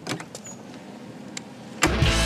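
Trailer door handle and latch clicking as the door is worked open, a few sharp clicks and rattles. Loud rock music with guitar cuts in suddenly near the end.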